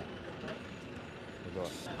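Street ambience in a pause in conversation: a steady low hum of traffic with faint background voices, and a brief quiet voice near the end.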